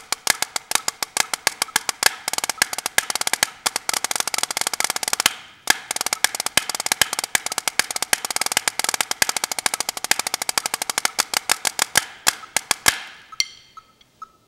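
Drumsticks playing fast rudimental patterns on a practice pad with a built-in snare unit, a metal plate holding BBs under the pad that gives each stroke a buzzy snare sound. The playing breaks off briefly about five seconds in and stops about a second before the end.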